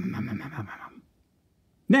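A man's silly vocal noise, a fast-wavering, whinny-like sound that falls in pitch and trails off about a second in.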